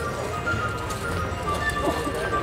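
Background music of steady held tones over a low hum.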